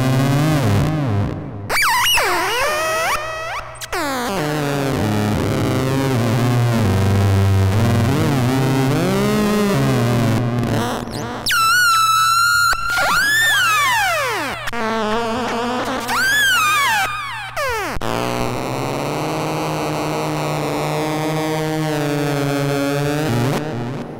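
Rakit Disintegrated Cracklebox, a touch-played noise synth sounding whenever fingers bridge its contacts, run through a Boss RV-6 reverb pedal: glitchy, unpredictable electronic tones that glide up and down, jump suddenly in pitch and fall in sweeps, then die away near the end as the hands lift off.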